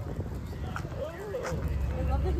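Distant voices of people talking over a low background rumble, with a couple of light clicks.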